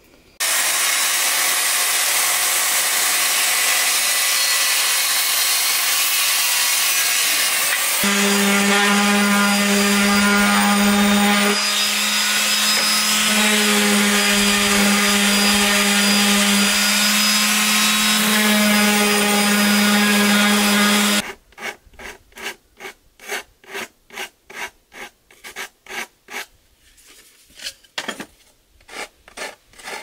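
A power tool runs steadily, and for much of the time a random orbital sander hums on plywood. It cuts off about two-thirds of the way through. Then comes hand sanding with sandpaper on the wood, about two rubbing strokes a second.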